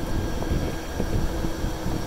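Golf cart driving along a paved road: a low rumble of tyres and wind with a faint steady hum.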